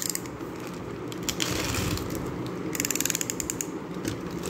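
Snap-off utility knife's blade being pushed out, its slider ratcheting in a rapid, even run of clicks for about a second near the end. A brief rustle of the plastic mailer comes before it.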